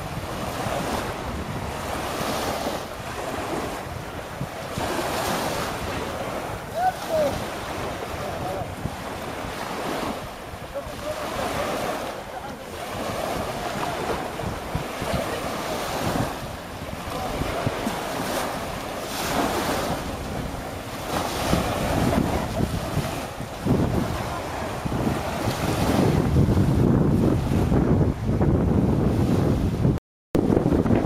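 Wind buffeting the microphone over small waves washing in the shallows, the wind rumble growing heavier in the last few seconds.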